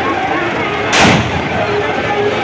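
A single loud bang about a second in, with a short ringing tail, over the din of a street crowd.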